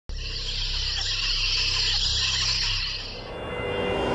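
Horror-channel logo intro sound effect: a steady hiss over a low rumble for about three seconds. It fades as pitched tones come in near the end.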